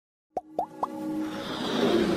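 Three quick plops, each rising in pitch and each a little higher than the last, about a quarter second apart, then a swelling whoosh with held tones building up: sound effects of an animated logo intro.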